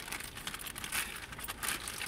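Plastic bag crinkling as it is picked up and handled, in irregular crackles.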